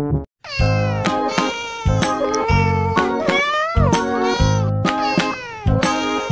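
A cat meowing again and again, in long calls that slide up and down in pitch, over background music with a steady beat. Everything starts after a brief moment of silence near the start.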